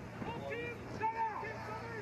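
Indistinct shouting and talking from players and onlookers, over a steady low hum.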